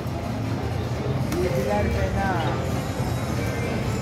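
EGT 'Flaming Hot' video slot machine running a spin, its electronic game sounds and music over the din of a casino floor, with other people's voices in the background.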